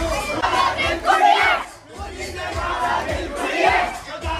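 A crowd of partygoers shouting together in two long rounds, with a short lull in between, over the thump of a music beat.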